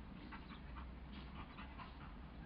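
Two border collies play-fighting and panting: a quick run of short, faint, breathy bursts.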